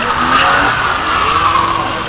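BMW's engine revving up and down under hard throttle, with a hiss of tyre noise.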